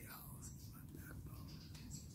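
Quiet whispered speech from a man close to the microphone.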